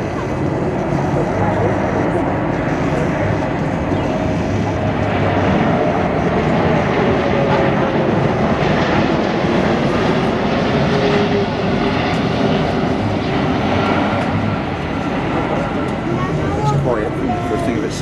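Airbus A340-600 with its four Rolls-Royce Trent 500 turbofans flying low overhead in a banking flypast: steady jet engine noise that swells toward the middle and eases off as it passes. A faint whine slides slightly down in pitch as it goes by.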